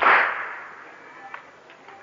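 A crowd of mourners striking their chests in unison in a latmiya: one loud slap of many hands at once that rings out and dies away over about a second, followed by a few faint scattered slaps.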